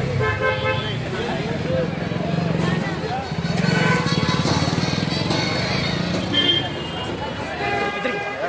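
Busy street traffic: motor engines running, with several short vehicle horn toots, among people's voices.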